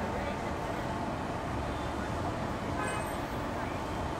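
Steady outdoor street noise with traffic and faint voices in the background.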